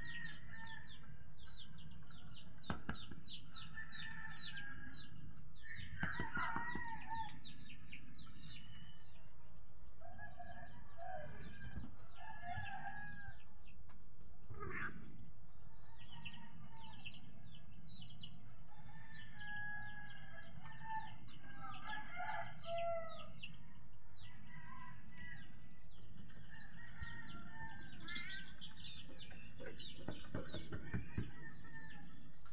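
Birds calling in the background: many quick high chirps, mixed with longer gliding calls that come and go, over a steady low rumble.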